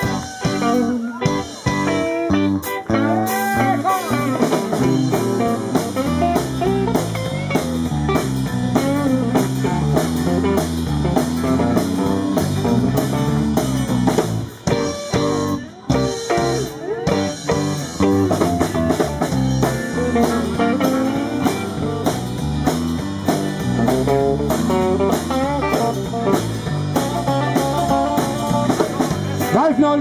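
Electric guitar solo in rock'n'roll style, played on amplified hollow-body electric guitar with the band keeping a steady beat behind it. Bent notes come in the first few seconds, and there is a brief break in the playing about halfway through.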